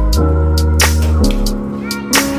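Background music with deep held bass notes that change twice and a sharp percussion hit about a second in.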